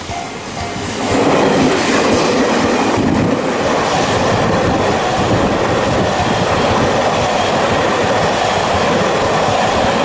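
Electric freight train passing close by, the wagons' wheels clattering over the rail joints. The noise swells about a second in and then holds loud and steady.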